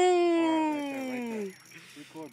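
A man's loud, drawn-out "ooh" that falls slowly in pitch, wavers into a laugh, and fades out about a second and a half in.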